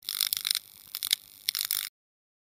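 A crackling, hissing electronic sound effect, high-pitched and thin, coming in uneven spurts (a longer one at the start, a brief crackle around the middle, another spurt near the end), then cutting off suddenly.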